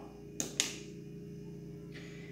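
Two light clacks of a kitchen ladle put down on the counter, about half a second in and a fifth of a second apart, over a steady low hum.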